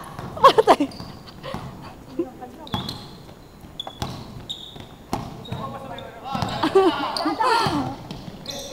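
Basketball bouncing on an indoor court in a string of sharp thuds, with short high sneaker squeaks on the floor in the middle. Players' voices come in briefly just after the start and again near the end.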